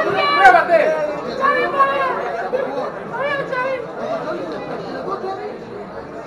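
Several people talking at once: overlapping voices and chatter, louder in the first second or so.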